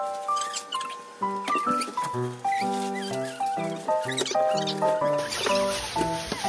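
Background music: a light, bouncy tune of short melody notes, with bass notes joining about a second in.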